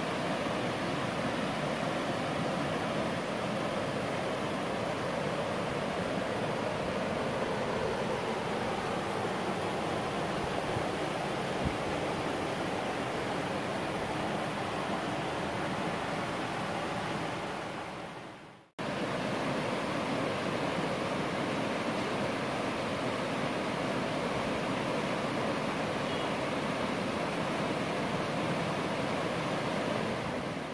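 Steady rush of a rocky mountain stream's water pouring over small cascades and falls. The sound fades out about eighteen seconds in, then comes back abruptly.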